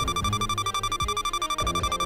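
Electronic countdown-timer alarm: a high, rapidly pulsing beep like an alarm clock ringing, signalling that the quiz timer is about to run out, over background music with a beat.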